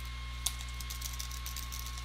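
Faint computer keyboard keystrokes as a short command is typed, with one sharper click about half a second in, over a steady low electrical hum.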